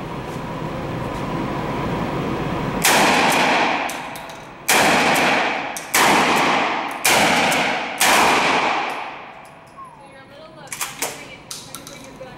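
Five 12-gauge shotgun blasts from a Kel-Tec KSG pump-action shotgun, the first about three seconds in and the rest about a second apart, each ringing out in the echo of an indoor range. A few faint clicks follow near the end.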